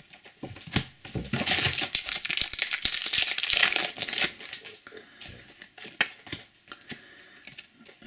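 Foil trading-card booster pack crinkling loudly as it is handled and torn open for about three seconds, then scattered light ticks as the cards inside are handled.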